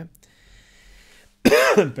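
A man clears his throat once, loudly and briefly, about a second and a half in.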